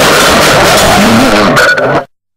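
Noisecore track: a loud, dense wall of distorted noise with wavering pitched squeals running through it, cutting off abruptly at the very end.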